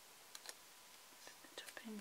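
Near silence with a few faint taps and clicks of hands handling and pressing a paper sticker onto a planner page; a soft voice begins near the end.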